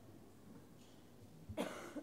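A short cough about one and a half seconds in, over quiet church room tone.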